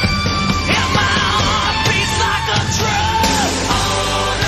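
A 1980s rock song plays at full volume: a high vocal line wavering and gliding in pitch over guitar, steady bass and drums.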